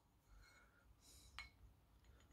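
Near silence, with a faint scratch and one light click from a watercolour pencil scribbling in a porcelain watercolour palette.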